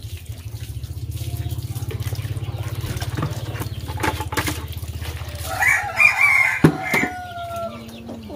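A rooster crowing once in the second half, a long call that ends on a drawn-out falling note. Before it, a steady low hum runs under water pouring from a hose into a basin, and a couple of sharp knocks of metal and plastic dishes come near the crow.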